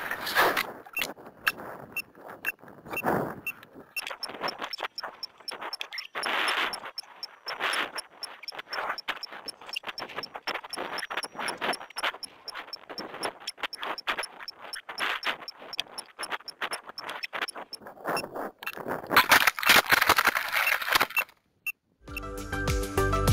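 Wind buffeting and rattling picked up by a camera riding on a model rocket as it comes down under its parachute, with a fast, even ticking through most of it. A louder rush of wind comes near the end.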